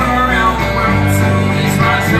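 Rock band playing live through a concert PA, recorded from the crowd: electric guitars and bass under a male lead voice singing.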